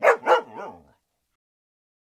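A cartoon dog voice: two quick barks running into a short wavering whine, all within the first second.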